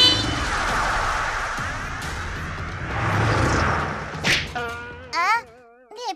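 Cartoon power-up sound effects over music: a long, sweeping, shimmering whoosh, a sharp swish about four seconds in, then a short warbling cartoon voice cry near the end.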